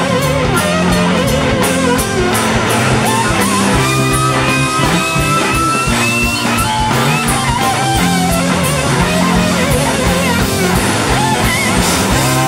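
Live rock band playing an instrumental passage: a lead guitar bending and sliding notes over bass and drums.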